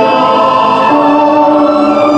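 Recorded music for the dance, playing loudly: long held choir-like vocal chords, the chord shifting about halfway through.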